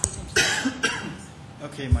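A man coughs and clears his throat into a podium microphone, two short noisy bursts, then a low thump on the microphone near the end as he starts to speak.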